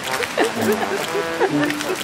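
A singing voice over background music, holding and sliding between notes.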